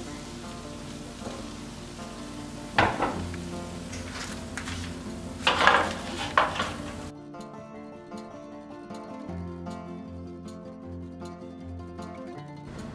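Soft background music with steady held notes, with a few short scrapes and knocks in the first half, around three seconds in and again near six seconds, as the candied pecans are worked out of the cast iron skillet with a silicone spatula.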